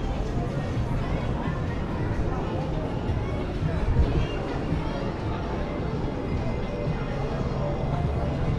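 Pedestrian shopping-street ambience: music from the shops mixed with people talking, over a steady low rumble, with a brief louder moment about halfway through.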